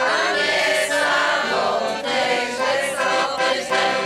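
A group of children and adults singing a song together, accompanied by an accordion.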